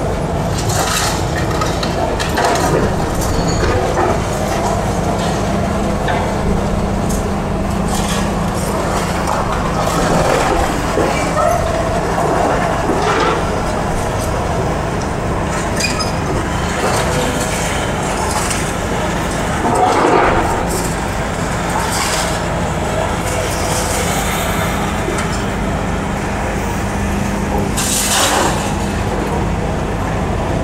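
Long-reach demolition excavator's diesel engine running with a steady low hum while its hydraulic crusher breaks up the concrete building, with irregular cracks and crunches of concrete and falling rubble, loudest about two-thirds of the way through.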